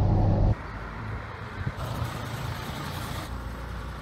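A 1987 Van Hool T809 coach's 5.7-litre diesel engine running while driving, with a steady low hum. About half a second in it cuts off suddenly to quieter, noisy vehicle background.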